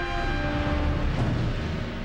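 Orchestral music in which a held, horn-like chord dies away within the first second, leaving a low rumbling drone underneath.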